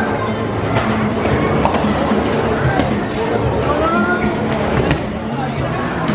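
Music playing under loud, continuous voices and chatter in a bowling alley, with a few short knocks.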